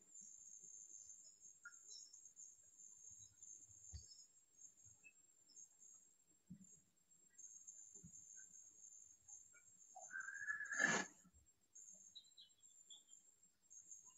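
Near silence: faint room tone with a steady high-pitched whine, and a brief faint noise about ten seconds in.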